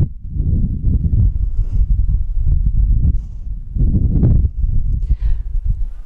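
Wind buffeting the microphone outdoors: a loud low rumble that rises and falls in gusts, dipping briefly at the start and again a little past halfway.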